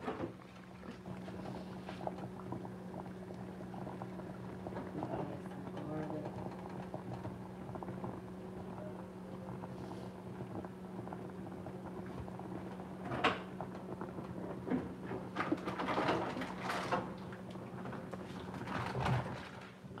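A pot of water at a rolling boil with whole bell peppers in it, over a steady low hum. A few sharp knocks and clinks come in the second half.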